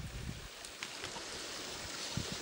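Muddy, fast-running creek water rushing and splashing over rocks in shallow riffles: sediment-laden runoff flow, heard as a steady wash of noise.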